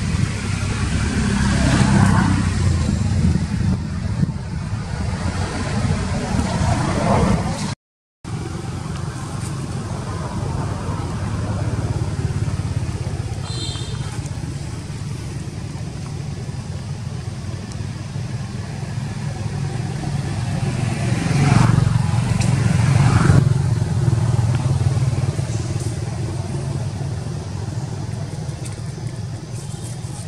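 Steady low engine drone of motor vehicles, swelling twice as something passes, about two seconds in and more loudly around two-thirds of the way through. The sound cuts out completely for a moment about eight seconds in.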